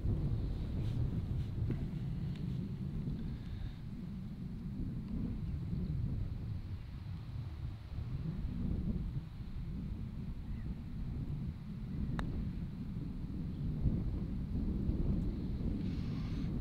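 Wind buffeting the microphone, a steady low rumble, with one sharp click about twelve seconds in from a putter striking a golf ball on the green.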